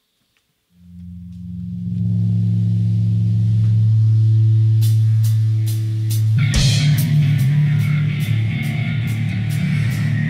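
Live heavy metal band: after a moment of quiet, a held low electric guitar and bass note swells in about a second in, cymbal strikes join around five seconds in, and the full band with drums comes in at about six and a half seconds.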